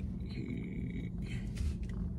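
Low, steady rumble of a car idling, heard from inside the cabin.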